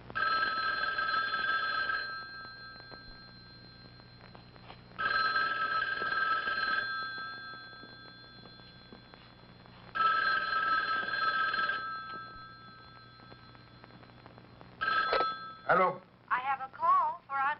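Telephone ringing in a steady two-tone ring, three full rings about five seconds apart, each lasting about two seconds. A fourth ring breaks off after a moment near the end as the phone is picked up.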